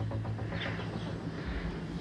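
A synthesizer theme with a pulsing beat fades out in the first half-second, leaving a steady low hum and faint background noise.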